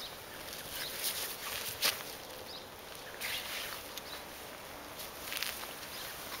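Rustling and scuffing of a quilted cloth cover as it is handled and pulled off a plastic cloche over a tomato plant. It comes in a few short bursts, with a sharp click about two seconds in.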